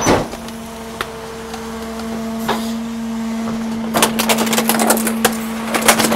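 Garbage truck's hydraulic packer crushing plastic Power Wheels ride-on toys in the hopper: a steady machine hum, with a rapid run of cracks and snaps of breaking plastic from about four seconds in.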